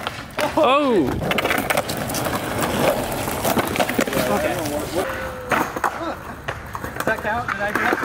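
Skateboard wheels rolling over rough asphalt, with a few sharp wooden clacks of the board being popped and landing during a flatground trick. Short shouts from onlookers break in now and then.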